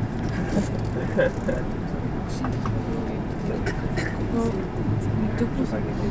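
Low indistinct voices of people talking, over the steady low running hum of an electric commuter train moving slowly.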